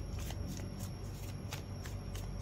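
A tarot deck being shuffled by hand, a run of short crisp card strokes at about three a second.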